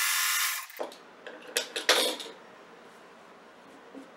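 Electric sewing machine running at a steady speed as it stitches a seam through quilt squares, then stopping a little under a second in. A few short clicks follow.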